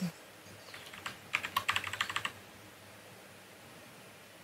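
A quick run of about ten light clicks over about a second, from working a computer's input devices.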